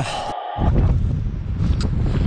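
A short burst of static hiss with a steady tone, a glitch transition effect, cutting off abruptly about a third of a second in. Then wind buffeting an action camera's microphone, a steady low noise.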